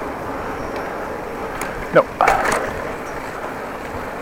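Steady rush of wind on the microphone of a moving bicycle, with its tyres rolling over the pavement.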